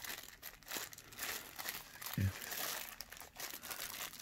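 A small clear plastic zip-lock bag of mounting parts crinkling and rustling as gloved hands handle it, with scattered small clicks. A brief voice sound comes a little past halfway.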